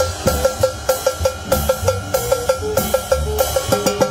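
Live dance-band music with a drum kit played close up: sticks beat out a fast, even pattern of sharp, ringing strikes, about five a second, over a pulsing bass and a sustained tone.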